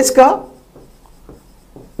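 A pen writing on a board: faint, short strokes in quick, irregular succession for about a second and a half after a spoken word at the start.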